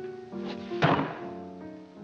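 Orchestral film music holding sustained chords, with one sudden heavy thump a little under a second in, the loudest moment, as a fist comes down on the table.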